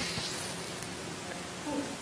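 Quiet room tone in a pause in speech, with a faint, brief voice near the end.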